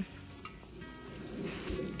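Soft rustling of leaves and vines as a hand reaches into a trellised plant, growing a little louder near the end, with faint background music underneath.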